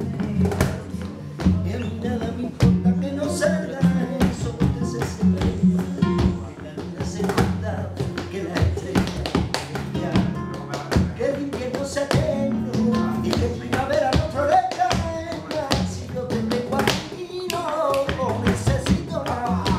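Live flamenco alegría: nylon-string flamenco guitar playing with sharp, rhythmic palmas (hand clapping) from several people. A man's singing voice comes in over it in the second half.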